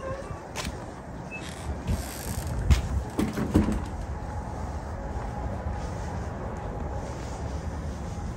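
Outdoor background noise: a low, uneven rumble with a few sharp knocks in the first four seconds, as the camera is carried toward a shop door.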